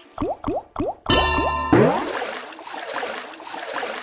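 Slot machine game audio: three quick plopping blips that fall in pitch in the first second, then a short chime and a busy layer of game music with a pulsing high shimmer.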